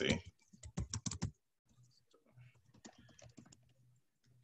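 Typing on a computer keyboard: a quick, loud run of keystrokes in the first second and a half, then fainter, scattered taps.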